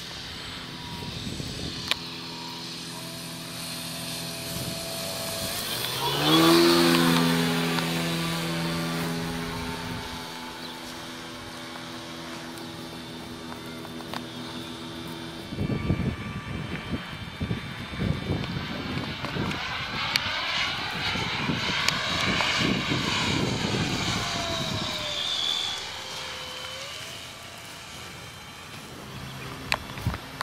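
Giant-scale electric RC biplane flying past: the whine of its electric motor and propeller swells quickly to its loudest about six seconds in, then fades. A second, noisier pass swells again later and dies away near the end.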